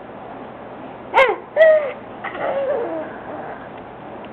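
Baby vocalizing: three short, pitched coos starting about a second in, the last one longer, wavering and falling in pitch.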